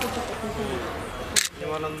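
Several people talking in overlapping voices, with a single sharp click about one and a half seconds in.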